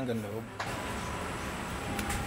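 A man's voice trailing off on a long, falling drawn-out syllable in the first half second, then steady background noise with a faint thin steady tone.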